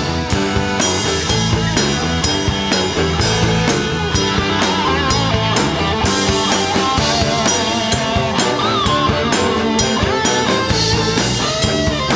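Live hard-rock band playing an instrumental passage without vocals: a drum kit keeping a steady, even beat under electric guitar and bass guitar.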